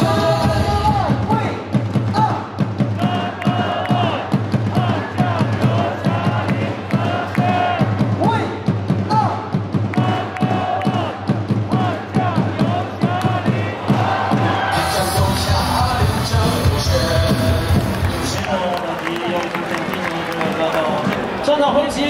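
A baseball player's cheer song plays over the stadium loudspeakers with a steady beat, and the crowd chants and cheers along. The beat drops away near the end.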